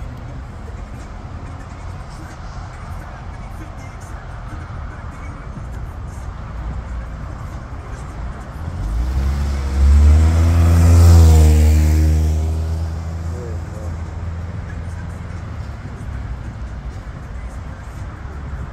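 Road traffic running steadily at an intersection, with a Chevrolet Equinox SUV driving past close by: its engine and tyre rumble swells from about nine seconds in, is loudest around eleven seconds, bends in pitch as it goes by, and fades over the next couple of seconds.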